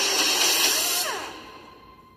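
A loud, harsh, noisy sound effect from the film trailer's soundtrack, with a few sweeping pitch glides in it. It fades away from about a second in to near quiet, leaving only a faint steady tone.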